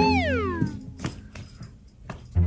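A cat meowing once, the call gliding down in pitch and ending under a second in, followed by a single sharp click about a second in.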